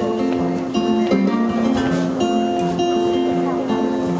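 Electric guitar playing ringing, sustained chords, changing about once a second, in an instrumental gap of a live song.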